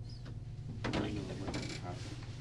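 Steady low electrical hum of a room recording, with a short burst of clicks and rustling about a second in and a smaller one shortly after.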